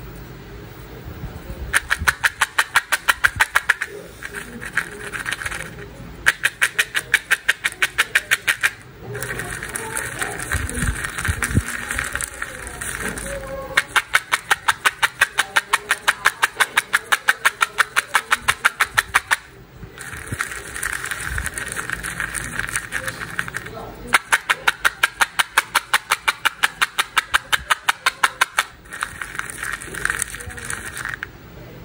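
Candy-coated chocolates (M&M's) shaken in a plastic cup: a rapid, even rattle of the candies against the cup and each other, in four spells of a few seconds, with softer rolling and rustling between.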